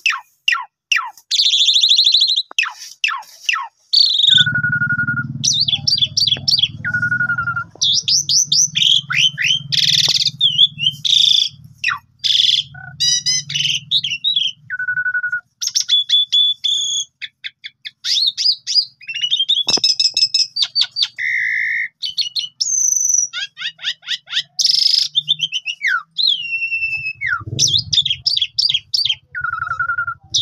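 Caged Asian pied starling (jalak suren) singing a long, varied song almost without pause: fast rattling chatter, sharp clicks, rising and falling whistles and a short level whistle that comes back several times.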